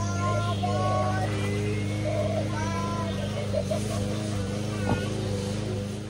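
Motion-activated animated reaper Halloween prop playing its spooky soundtrack of held and gliding eerie tones, over a steady low electrical hum.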